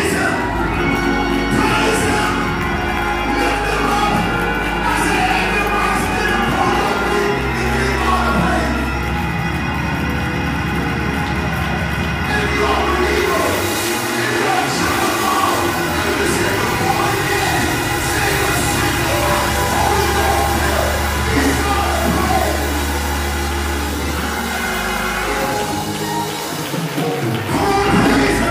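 Live gospel church music: long sustained bass notes shifting every few seconds under a lead voice singing into a microphone.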